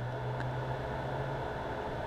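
Steady background hum and hiss, with a low steady tone that stops about one and a half seconds in.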